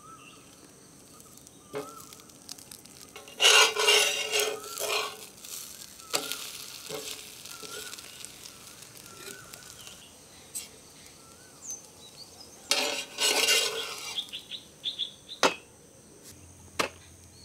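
Rava rotti frying in ghee on a cast-iron tawa, with two bursts of sizzling and spatula scraping, about three and a half seconds in and again about thirteen seconds in. Faint bird chirps come between them.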